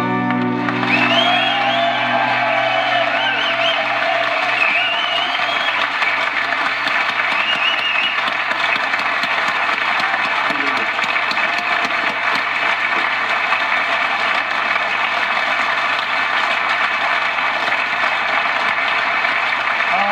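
Studio audience applauding and cheering, with whoops and whistles in the first several seconds, as the last acoustic guitar chord dies away.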